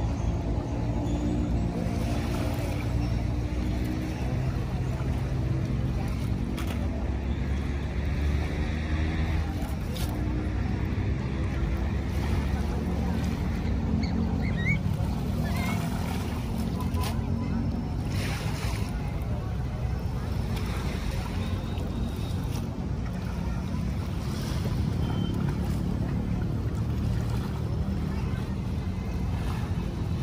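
Outdoor shoreline ambience: a steady low rumble of wind and bay water, with a faint engine-like hum through roughly the first half.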